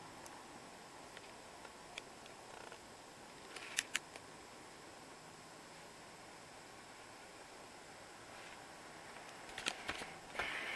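Quiet room tone with a few small clicks and taps from a handheld camera being moved about, the loudest a pair of clicks just before four seconds in and a few more near the end.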